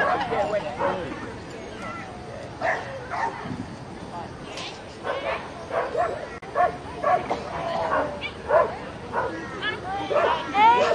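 A dog barking in short, sharp barks: a few in the first seconds, then more often through the second half.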